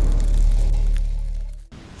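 Closing music sting of a news segment: a held deep bass note that fades away and cuts off about three-quarters of the way through.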